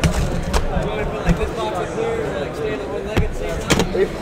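A trading-card box being unwrapped and handled on a table: its shrink-wrap pulled off, with a few sharp knocks of the cardboard box, two of them close together near the end, over background voices.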